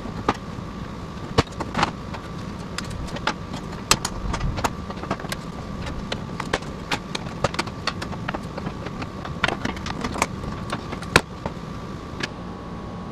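Irregular plastic clicks and knocks of pliers working the stiff retaining clips of a 2012 Chevy Silverado 2500's plastic grille until it comes free. A steady shop hum runs underneath.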